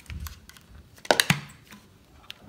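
Hinged plastic flip-top lid of a tea tumbler being clicked open: a few small clicks, then two sharper snaps about a second in.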